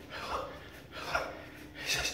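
A man breathing hard and rhythmically during push-ups, three short breaths in two seconds, one with each repetition.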